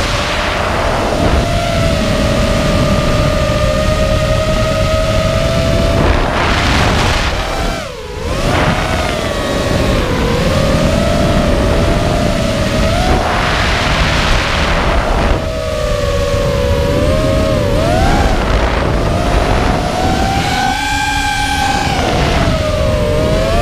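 QAV210 racing quadcopter's brushless motors and 5-inch props heard from on board in flight: a loud whine of several tones over heavy rushing wind noise. The whine dips briefly in pitch and loudness about eight seconds in, swells with surges of airy noise a few times, and climbs higher near the end.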